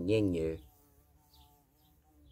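A man's voice for about the first half second, then near silence with a faint steady hum.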